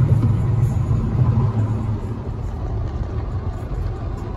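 Road noise inside a moving car's cabin: a steady low rumble of tyres and engine.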